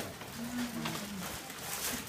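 Tissue paper rustling as a gift bag is unpacked, loudest in a brief crinkle near the end, with a low drawn-out murmur from a voice in the first second.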